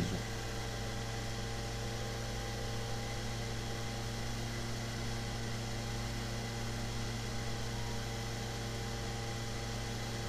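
Steady electrical hum and hiss of the recording's background noise, with several constant steady tones and a low hum band, unchanging throughout.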